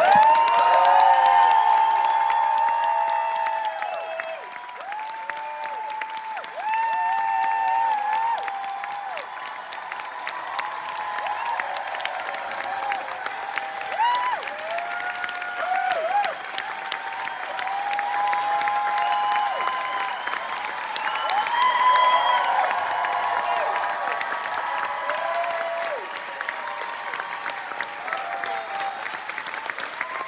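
Theatre audience applauding and cheering, with many voices whooping over the clapping. It is loudest in the first couple of seconds and swells again about 22 seconds in.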